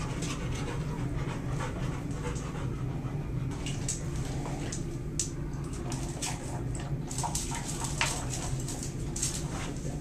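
A large dog eating dry kibble from a stainless steel bowl and panting, with scattered sharp crunches and clicks against the bowl from about three and a half seconds in, over a steady low hum.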